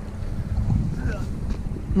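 Wind rumbling on the microphone, with sea water washing among shore boulders underneath.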